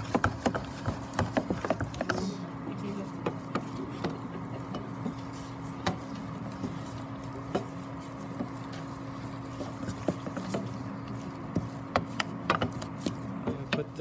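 Wooden spoon stirring and knocking a stiff choux dough around a stainless-steel saucepan as the paste is dried over the heat: a run of quick knocks and scrapes, thick at the start and again near the end, sparser in between. A steady low hum runs underneath.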